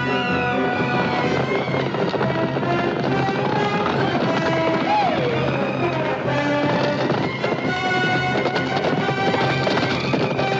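Orchestral film score playing continuously, with brass and strings.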